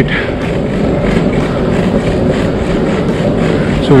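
Oxelo Carve 540 Bird longboard's wheels rolling over rough asphalt: a steady, even rumble.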